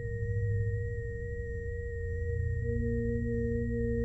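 Sustained electronic drone tones: a steady high tone and a steady mid tone over a low hum, with another low tone coming in about two and a half seconds in.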